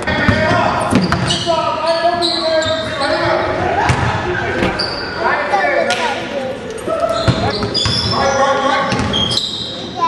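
Basketball being dribbled and bouncing on a hardwood gym floor, with players and onlookers talking and calling out throughout, all echoing in a large hall.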